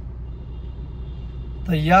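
Steady low drone of a car idling at a standstill in traffic, heard from inside its cabin, with a faint thin high whine over it. A man starts talking near the end.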